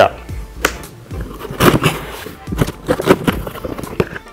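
Cardboard shipping box being opened: the packing tape is slit and the flaps pulled back, a run of irregular scrapes, crackles and rustles of cardboard and tape.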